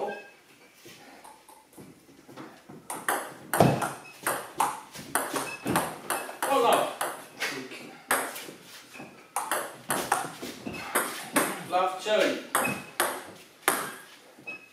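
Table tennis ball striking the table and the rubber-faced bats in quick clicks during rallies, about two hits a second, with a break of about a second near the middle.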